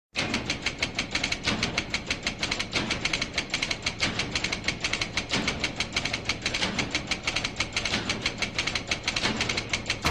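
A fast, even ticking, about seven ticks a second, over a low steady hum.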